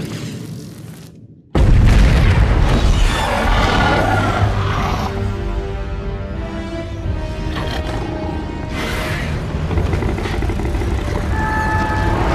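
Film music and effects: the sound fades away over the first second and a half, then a sudden deep boom hits and loud dramatic music with long held notes carries on.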